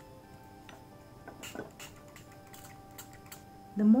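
Scattered faint clicks and light taps from a finger mixing a damp powder paste in a small steel bowl, about eight in all with irregular gaps, over faint background music with a few held notes.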